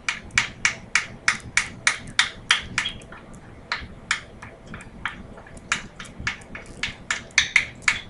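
A small spoon mashing butter and spices in a glass bowl, its strokes clicking against the glass in a fast, even run of about five taps a second, with a short break about three seconds in.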